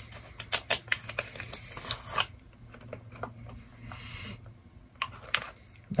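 A bar of goat milk soap being unwrapped from its paper wrapping by hand: a quick run of sharp crinkles and clicks for about the first two seconds, then scattered clicks, with a short sniff about four seconds in.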